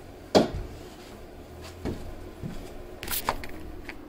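Handling knocks: one sharp clunk about a third of a second in, then a few lighter knocks and a brief scrape near the end, as tools and the camera are moved about.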